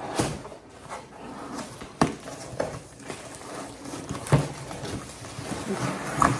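Cardboard box and packaging being handled: irregular rustling and scraping with a few sharp knocks, the loudest about four seconds in.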